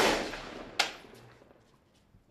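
Two single shots from a Kalashnikov-pattern assault rifle. The first, the loudest, cracks right at the start and echoes away over about a second. The second comes a little under a second in and also trails off in echo.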